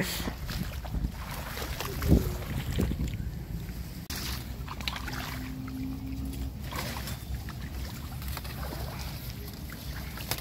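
Reeds rustling and shallow marsh water sloshing as a person wades into a reed bed and reaches into the water. Wind buffets the microphone throughout, with a steady low rumble.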